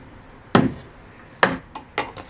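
An egg tapped twice against a hard surface to crack its shell, two sharp knocks about a second apart.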